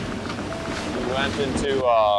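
Rustling handling noise from a handheld camera on the move in a group, with indistinct voices in the second half.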